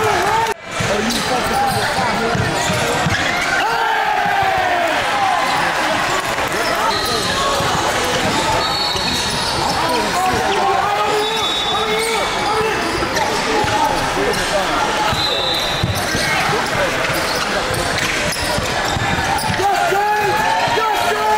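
Basketball game sound in a large gym: a ball bouncing on the hardwood court, a few short high squeaks of sneakers, and steady overlapping voices of players and spectators echoing in the hall.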